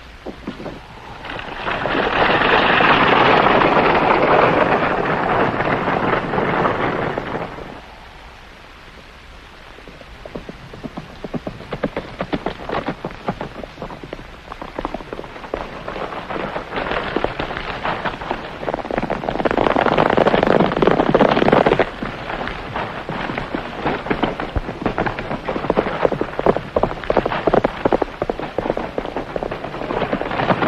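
Horses galloping: a dense clatter of hoofbeats mixed with the rumble of a stagecoach's wheels. It drops quieter about eight seconds in, then rapid hoofbeats build up again.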